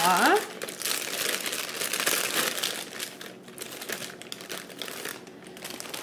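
Plastic marshmallow bag crinkling as hands rummage in it to pull out a small marshmallow, loudest over the first few seconds and then fading.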